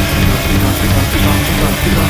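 Loud, dense instrumental passage of a band's song, with held bass notes under a noisy, hissing upper layer.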